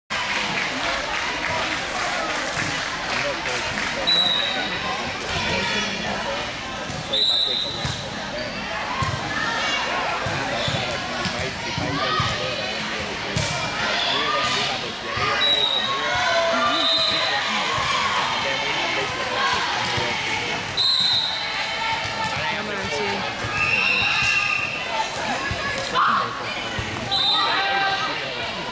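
Volleyball being played in a gym: the ball being struck and thumping on arms and floor again and again, with several short high-pitched squeaks, under constant chatter and calls from players and spectators, echoing in the hall.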